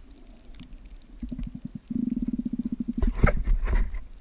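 Muffled underwater sound picked up by a GoPro in its waterproof housing while snorkelling. A rapid, low pulsing buzz runs for about a second from two seconds in, followed by a few louder splashy knocks near the end.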